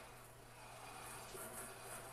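Near silence: faint room tone with a low steady hum, and no clear sound from the arm being moved.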